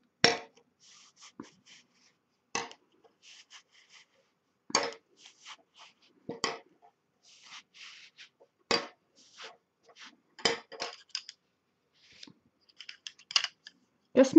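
Wooden weaving sticks clicking against one another as they are pulled up out of the woven yarn and handled in a bunch: a sharp click about every two seconds, with softer ticks between.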